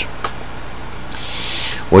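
A pause in a man's narration filled by a steady low electrical hum, with a soft breath in near the end just before he speaks again.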